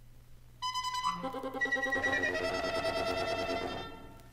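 Wind ensemble playing an avant-garde passage: a sudden loud high held note about half a second in, joined by more and more sustained pitches into a dense chord cluster that cuts off just before the end.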